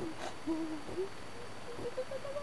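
A woman's soft, wordless moaning in short, wavering pitched tones, the sound of a person crying out quietly in a deep emotional release.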